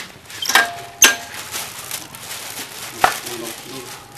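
Three sharp knocks or clatters of handled objects, about half a second, one second and three seconds in, the second the loudest and followed by a short ring, with faint voices between them.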